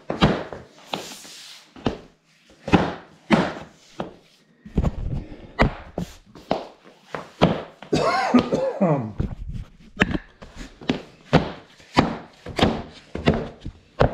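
A run of sharp thunks and knocks, a couple a second, as knees and hands press along a freshly laid Pergo Outlast laminate board, bending it down so its click-lock joints seat into the groove.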